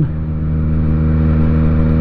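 Motorcycle engine running at a steady cruise, one constant droning pitch, under an even rush of wind and road noise.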